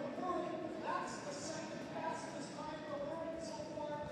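Indistinct voices of people talking in a large indoor arena, with a light, quick patter of steps recurring two or three times a second.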